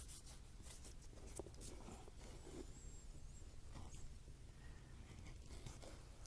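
Faint, short scraping strokes of a hand leather edger shaving the sharp corners off the edges and slots of a leather knife sheath.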